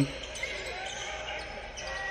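Faint sound of a basketball game in a gym, heard through the game footage: a ball bouncing on the court with crowd chatter behind it.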